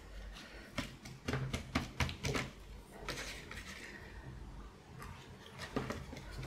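Scattered sharp clicks and taps and a brief paper rustle from hands working a mini hot glue gun over a paper envelope and fabric scrap, over a faint steady low hum.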